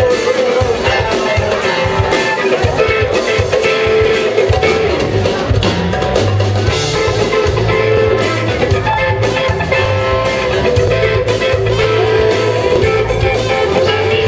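Live band playing an upbeat song at full volume: electric guitar, bass guitar and drum kit, with trumpet and saxophone, under a strong, steady bass line.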